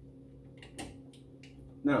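A few faint clicks and taps from hand-fitting the retaining screw on a wire feeder's drive-roll assembly, over a steady low hum.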